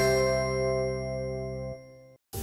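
Programme ident jingle ending: after a run of struck hits, a final chord rings on and slowly fades, its low bass note cutting off near the end.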